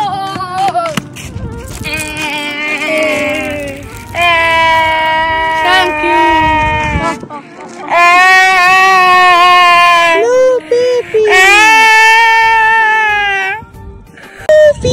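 A voice holding long drawn-out notes, four of them, each kept on a nearly steady pitch for two to three seconds, with short breaks between.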